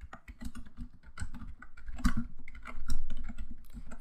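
Computer keyboard typing: a quick, irregular run of keystrokes as a line of text is entered.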